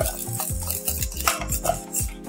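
A wire whisk beating thick pastry cream in a stainless steel saucepan, with repeated scraping strokes against the pan. The cream is being whisked past its thickest point so that it loosens and turns glossy.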